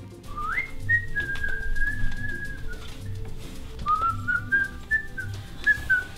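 Someone whistling a short tune: a note that slides up and is held steady for about two seconds, then a second phrase climbing in small steps. Soft music with a low beat about once a second runs underneath.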